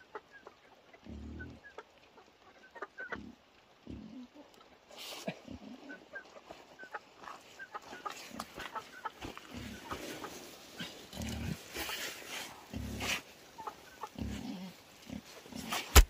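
Chickens peeping and clucking in repeated short high chirps, with short low sounds scattered among them, and a sharp knock at the very end.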